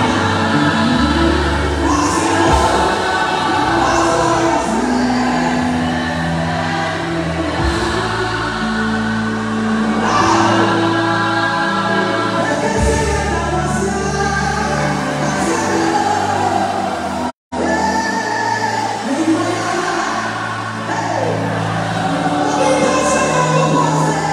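Live gospel music: a lead singer and a choir of voices singing over a band with held bass notes. The sound cuts out for a split second about two-thirds of the way through.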